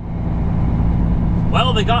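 Cummins ISX diesel of a Kenworth W900L semi truck running under way, a steady low drone heard from inside the cab.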